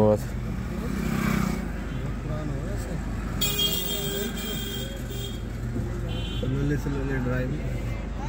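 Steady low hum of a car's engine idling, heard inside the cabin, under quiet murmured voices. About three and a half seconds in, a brief crackle of paper as salt is pinched from a paper wrap in a cup.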